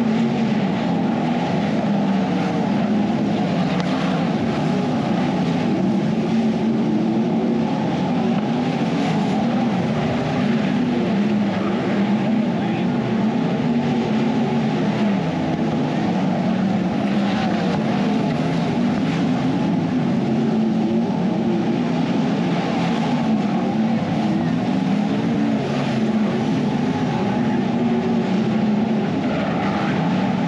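A field of non-wing sprint car engines running at racing speed on a dirt oval, heard from beside the track as one loud, continuous, steady engine sound that overloads the microphone.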